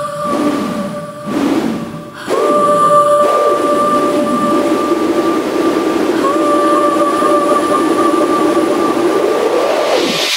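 Afro house DJ mix in a beatless breakdown: a long held synth tone with its octave above, over a swept hiss that falls and then rises toward the end like a build-up. A short dip and drop-out comes a second or two in.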